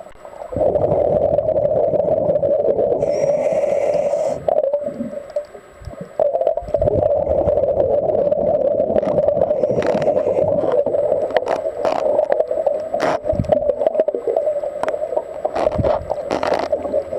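Muffled underwater bubbling rumble of a diver's breathing gear, heard through the camera's waterproof housing. It starts about half a second in, pauses for a couple of seconds about four and a half seconds in, then runs on steadily.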